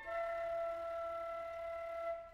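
Classical wind-concerto recording: one soft note held steady for about two seconds, with a fainter lower note sounding beneath it.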